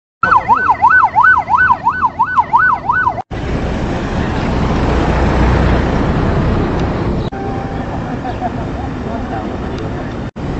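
Emergency vehicle siren wailing rapidly up and down, between two and three sweeps a second, for about three seconds. It cuts off abruptly and is followed by a steady, rumbling noise with no clear tone.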